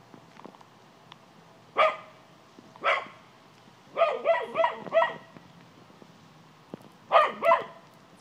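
Cocker spaniel barking in short, sharp barks: one about two seconds in, another about a second later, a quick run of four near the middle, and a close pair near the end.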